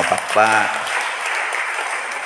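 Applause: hands clapping steadily, with the clapping close to the microphone. A short voice sound cuts in about half a second in.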